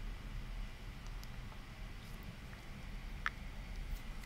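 Quiet room tone with a low steady hum, broken by one faint short click about three seconds in.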